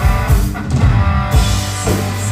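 Rock band playing live: two electric guitars over a drum kit, with a steady beat of about two kick-drum hits a second.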